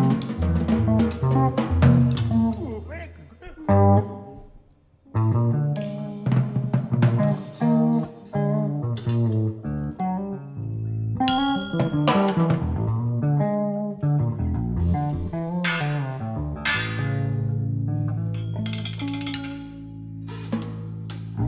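Electric bass guitar and drum kit improvising jazz together: plucked bass lines under scattered drum and cymbal strikes. The music thins almost to nothing about four to five seconds in, then resumes, ending on a long held low note.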